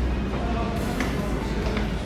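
Shop ambience: a steady low hum with faint voices in the background.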